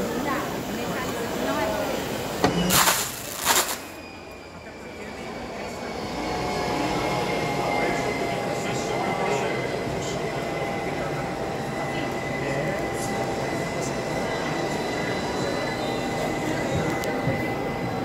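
Steady mechanical running of label-printing machinery under the chatter of a crowd, with a short burst of loud noise about three seconds in and a faint steady whine from about six seconds on.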